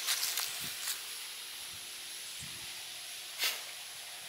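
Steady outdoor background hiss, with a few brief rustling clicks in the first second and another about three and a half seconds in.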